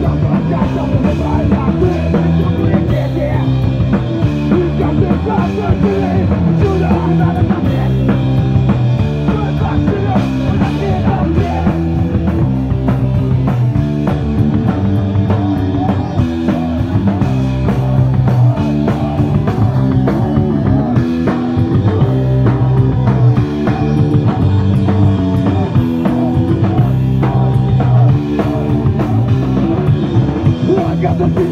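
A live punk rock band plays at full volume, with distorted electric guitars, bass and a drum kit pounding out a steady, driving rhythm.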